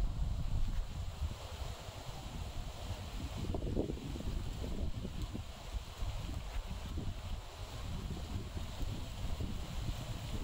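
Wind buffeting a phone's microphone outdoors: a steady low rumble, strongest in the first second.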